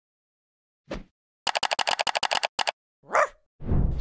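Dog barks cut up as an intro sound effect: a single bark about a second in, then a fast stuttering run of about a dozen short repeats, then another bark with a rising and falling pitch. A low music swell comes in near the end.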